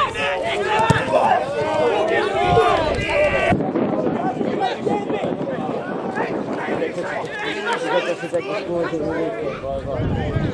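Several people's voices calling out and chattering across an outdoor football pitch, the words indistinct.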